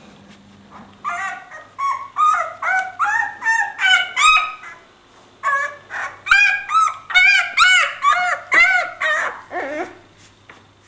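Newborn Leonberger puppy crying in a rapid string of short, high-pitched squeals, about two or three a second, with a brief pause near the middle; the last cry slides lower in pitch.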